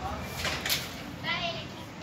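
A short burst of hissing noise, then a brief high-pitched, wavering voice a little over a second in.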